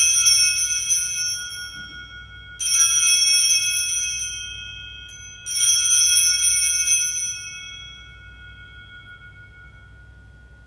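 Altar bells rung three times, about three seconds apart. Each ring is a bright cluster of high tones that fades slowly, marking the elevation of the consecrated host.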